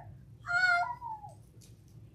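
A single short, high-pitched cry lasting about a second, falling in pitch at its end.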